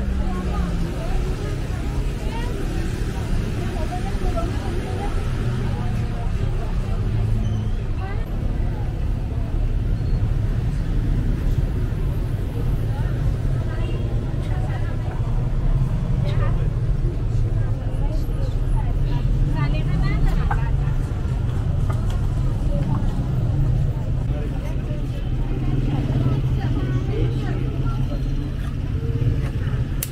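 Busy street ambience: passers-by talking over a steady low hum of traffic.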